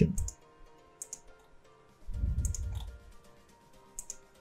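A few short, sharp computer mouse clicks over faint background music with steady held tones, and a low muffled rumble lasting under a second midway.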